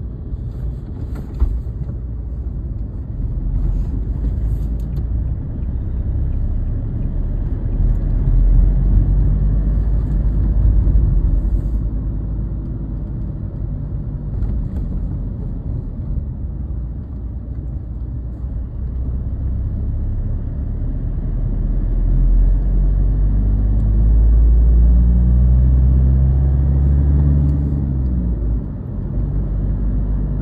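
Car engine and road rumble heard from inside the cabin while driving, swelling twice as the car speeds up, with a single sharp click about a second and a half in.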